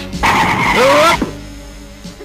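Cartoon sound effect of an electrical fizz with a rising whine, lasting about a second, as a robot costume shorts out in puffs of smoke. Background music carries on underneath and fades out.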